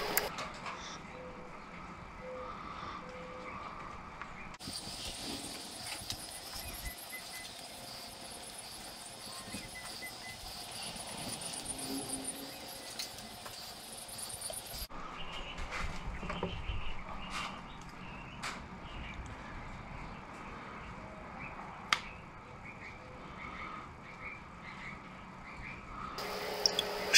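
Quiet handling sounds of a quail's skin and feathers being pulled off by hand, with a few small sharp clicks in the second half, over faint background chirping.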